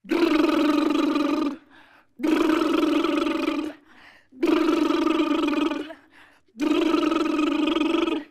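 Performers' voices making a vocal face-washing sound effect four times, each a long, steady-pitched sound of about a second and a half with short gaps between, in time with miming splashing and rubbing their faces.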